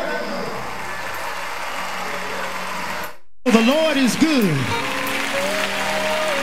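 About three seconds of steady noise, then a brief cut-out of all sound, then a voice singing in sweeping pitch slides over a steady held note of backing music.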